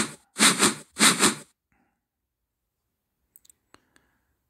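Two breathy bursts of a man's voice, like whispered laughter or heavy exhales, in the first second and a half, followed by a few faint clicks near the end.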